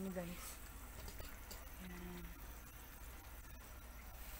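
Faint simmering of a sauce in a wok of sautéed bitter gourd and egg, with a few small pops over a low steady hum. A short hummed voice sound comes at the start and again about two seconds in.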